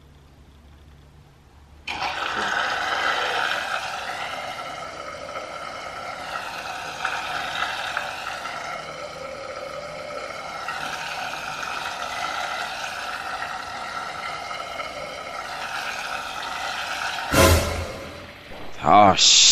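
Countertop coffee maker brewing: a steady hiss and pour of hot water that starts abruptly about two seconds in, its tone shifting slowly as the cup fills. A sharp knock near the end.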